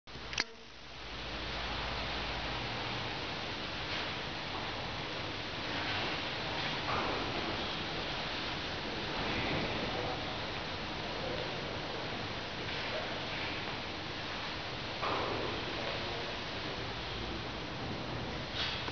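Steady background hiss of a large metal hangar, with a sharp click about half a second in.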